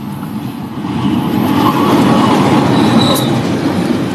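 Diesel-electric locomotive and passenger coaches passing close by, the engine and the wheels on the rails growing louder about a second in and staying loud. A brief high squeak about three seconds in.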